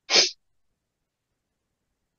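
A single short, sharp burst of breath noise, about a quarter of a second long, just after the start, heard close to the microphone.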